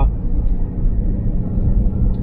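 Steady low road rumble inside the cabin of a 2007 Toyota 4Runner V8 at highway speed, with a faint thin whine above it. The owner puts the whiny noise from the back down to unevenly worn, mismatched off-road tires, but suspects the rear differential.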